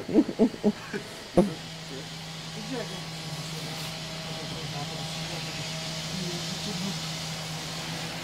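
A motor vehicle's engine idling, a steady low hum that sets in about a second and a half in and holds. Brief talking voices come before it.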